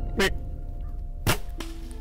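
Two sharp hits about a second apart, each with a short falling tail, over a held background-music tone that stops near the end.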